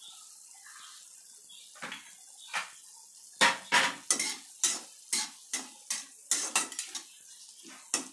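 A utensil knocking and scraping against a kadai as diced raw mango is stirred in oil. There are a few faint clicks at first, then from about three seconds in a run of sharp knocks, roughly three a second.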